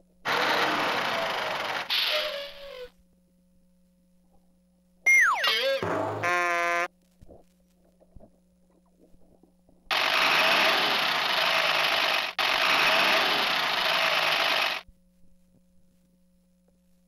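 Electronic sound effects from the speaker of a Bright Starts Having A Ball Swirl and Roll Truck toy. First comes a rushing effect lasting about two and a half seconds, then a quick falling whistle-like glide followed by a short buzzy tone. Later there is a rushing effect of about five seconds with a brief break in the middle.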